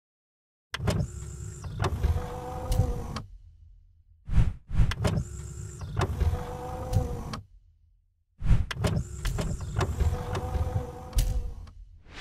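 Mechanical sound effect for an animated title sequence: a whirring, sliding motor sound with sharp clicks, heard three times for about three seconds each, with two short whooshes between the first and second.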